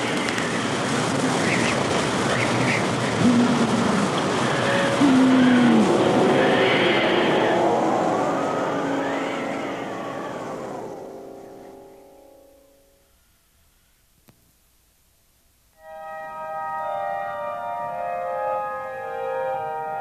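Cartoon wind sound effect: a loud rushing gust with wavering, gliding tones over it, dying away about twelve seconds in. After a few seconds of near silence, music of sustained held chords begins about sixteen seconds in.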